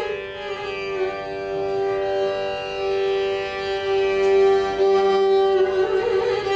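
Carnatic concert music in raga Pantuvarali, with voice and violin. One long, steady note is held for about five and a half seconds, then the ornamented, gliding melody starts again near the end.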